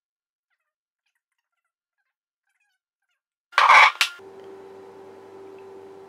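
Dead silence for about three and a half seconds, then one short, loud pitched cry lasting about half a second. After it comes a faint, steady hum with a single clear tone.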